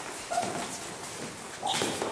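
Two short squeaks, one about a third of a second in and one near the end: trainers squeaking and scuffing on a wooden hall floor as several people move about.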